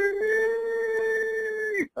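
A single wailing cry at one steady pitch, lasting nearly two seconds and stopping abruptly. It stands for a young deer crying out in distress.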